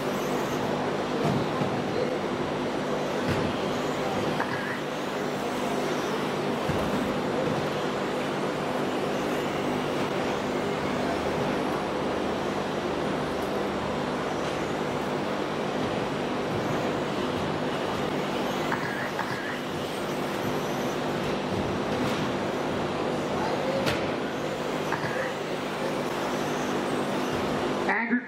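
Electric radio-controlled race cars running laps on an indoor track: a steady wash of motor and tyre noise over a constant hum, with a few sharp knocks.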